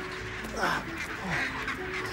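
A chinstrap penguin colony calling, with loud squawks about half a second in and again near the middle, over sustained background music.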